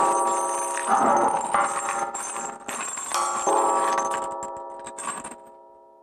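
A large cymbal struck with a yarn mallet rings with several steady pitches at once. It is struck again about a second in and about three seconds in, and the ringing then fades away slowly.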